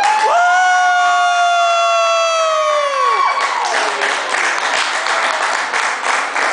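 A boy's singing voice through a microphone holds one long high note, swooping up into it and fading out about three seconds in, as the song ends. The audience then breaks into applause and cheering.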